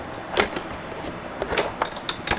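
A few light clicks and knocks, one about half a second in and a small cluster near the end, over a steady background hiss: handling noise from objects being moved and bumped close to the microphone.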